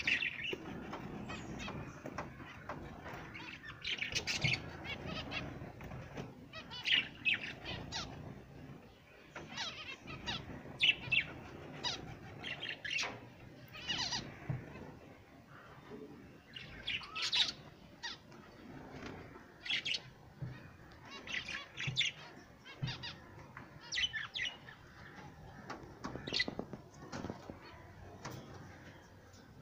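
Small cage birds chirping: short, high chirps and squawks repeated irregularly throughout.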